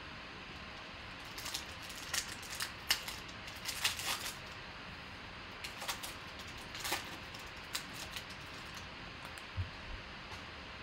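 Foil wrapper of a trading-card pack crinkling and tearing open by hand: a run of irregular crisp crackles, thinning out near the end as the cards come out.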